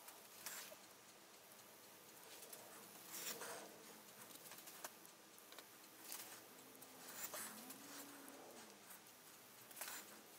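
Near silence broken by a few faint, short rustles of a watercolour brush dabbing and stroking paint onto paper.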